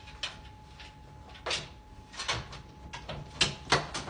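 A dog searching under a table for a hidden scent, making a series of short, irregular knocks and scuffs, loudest about three and a half seconds in.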